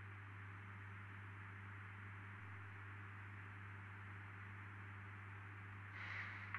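Quiet, steady room tone with a low hum.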